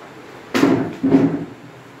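Two knocks on a desk, about half a second apart, as cards and papers are set down on it.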